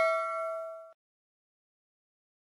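Bell-like notification chime sound effect, a few clear tones ringing out and fading. It cuts off abruptly about a second in.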